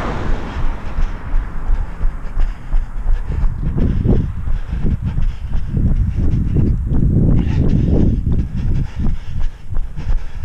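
Wind rumbling on a body-worn camera's microphone during a run, with low rhythmic thumps in step with the runner's footfalls. A passing car's noise fades away in the first half-second.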